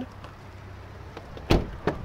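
A pickup truck's front door swung shut with one solid thump about one and a half seconds in, followed by a smaller latch click near the end as the rear door handle is pulled, over a low steady hum.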